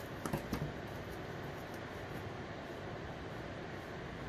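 Quiet room tone: a steady faint hiss, with a few light handling clicks in the first half second as the plastic piping bag and scissors are handled.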